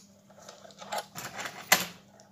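Thin steel transformer core laminations clicking and scraping against each other as they are slid into the coil's bobbin, with one sharp metallic click near the end.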